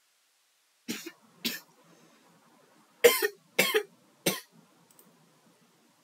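A person coughing five times: two smaller coughs about a second in, then three louder coughs in quick succession.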